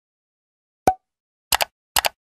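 Animated end-screen sound effects: one short pop about a second in as a button pops onto the screen, then a quick double click about halfway through and another right at the end.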